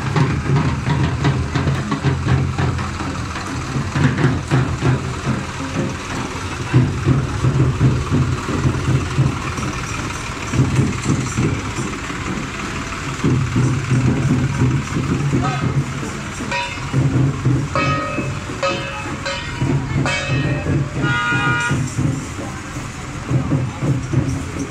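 Busy procession din: a crowd's voices mixed with a tractor engine running close by and music. Short pitched notes, like horn toots, sound in clusters in the second half.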